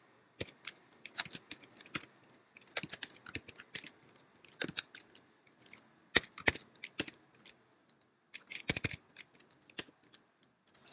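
Typing on a computer keyboard: quick, irregular runs of key clicks, with a short pause about three-quarters of the way through.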